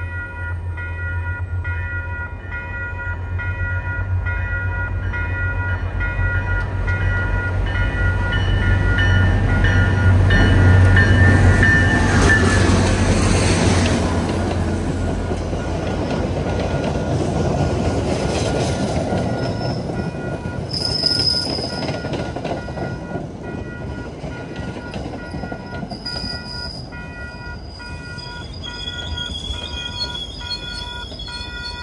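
MBTA diesel-hauled commuter train approaching over a grade crossing while the crossing bell rings, growing loud as the locomotive passes about ten to fourteen seconds in. The coaches then roll by with high-pitched wheel squeal in the second half.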